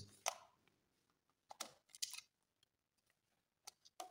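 Faint clicks and light scrapes of a screwdriver prying the faceplate off a wall-mounted air-conditioner switch: a handful of separate ticks, with near silence between them.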